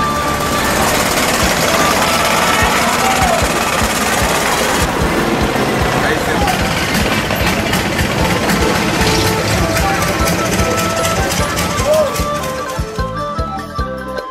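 Loud, steady running of a motorised canal boat's engine with a rapid knocking beat, voices of people around it, and music underneath; it fades out about a second before the end.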